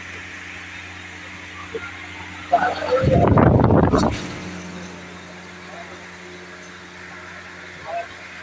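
Air from a running pedestal fan buffeting the phone's microphone: a loud, rough rumble lasting about a second and a half in the middle, over a steady low hum.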